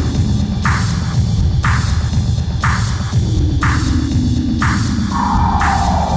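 Electronic music: a dense, throbbing bass under a noisy hit about once a second. Slowly falling synth tones glide down, one starting about halfway through and another near the end.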